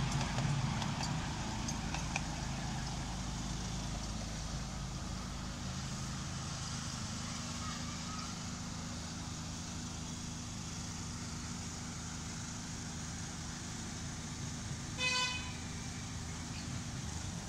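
A miniature railway train runs past and away, its low hum fading as it goes. About fifteen seconds in comes a single short horn toot.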